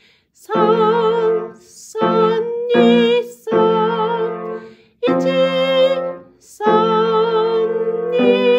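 A woman singing Japanese finger numbers in long held notes with vibrato, with short breaks between them, while playing a simple piano accompaniment.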